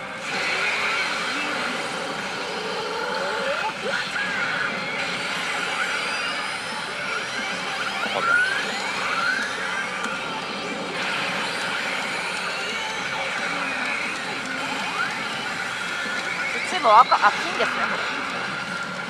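CR Shin Hokuto Musou pachinko machine playing its reach-presentation sound effects and character voice lines, with many short rising and falling tones, over the steady din of a pachinko parlour.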